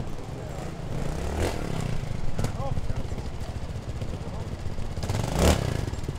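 Trials motorcycle engine running at low revs with a steady pulsing note as the bike is worked over rocks. Sharp knocks of the bike against rock come about a second and a half in, again a second later, and loudest just before the end.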